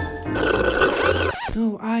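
Intro music, with a loud, rough burp starting about half a second in and lasting about a second, after a sip from a straw.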